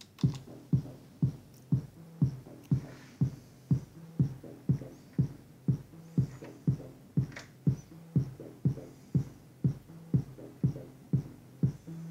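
Electronic acid-style track starting abruptly: a steady drum-machine kick about two beats a second under a Roland TB-303 bass synthesizer line.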